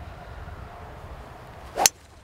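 A golf wood swished hard through the downswing and striking a ball off the fairway turf: a brief rising whoosh ending in one sharp crack near the end, a solid, well-struck shot. Wind rumbles on the microphone throughout.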